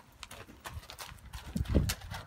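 Horse's hooves stepping on gravel in an irregular walking rhythm, with a louder low thump near the end.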